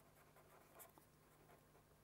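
Faint scratching of a pen writing on paper, in short strokes.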